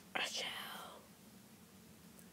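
A short breathy whisper starting just after the beginning and fading within about a second, followed by faint room tone.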